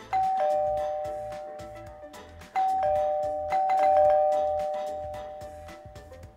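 Two-tone ding-dong doorbell chime rung three times: once at the start, then twice more in quick succession about halfway through. Each high-then-low pair of notes fades away slowly.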